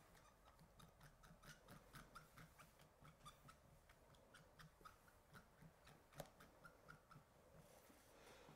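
Faint, rapid scratching and tapping of a watercolour pen's brush tip being stroked across a clear stamp to ink it, a few light strokes a second.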